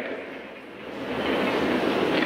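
A steady rushing noise, with no voice or tone in it, that dips at first and swells back up about half a second in, then holds.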